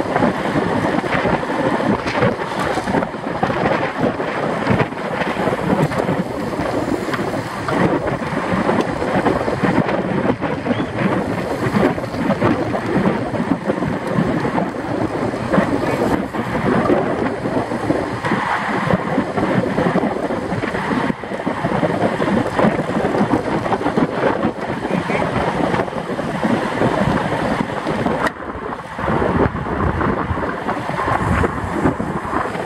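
Wind rushing over the microphone of a camera riding on a road bike at about 25 mph: a loud, steady rushing noise that eases briefly near the end.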